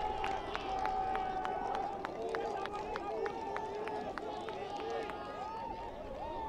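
Indistinct voices of rugby players and spectators shouting and calling across an outdoor pitch, with a rapid run of sharp clicks, several a second, that thins out after the first few seconds.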